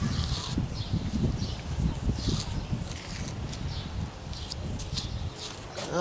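Soft, irregular rubbing and scraping of a gloved finger smoothing thin-set mortar joints between flexible stone veneer pieces, with short high swishes scattered through it, over a low irregular rumble.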